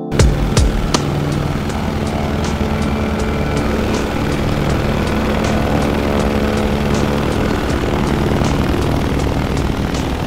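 Steady aircraft-engine drone with low humming tones, and a regular music beat running underneath it.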